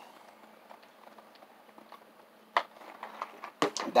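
A quiet room pause, then a single short click and, near the end, a quick cluster of small mouth clicks and lip smacks just before speech resumes.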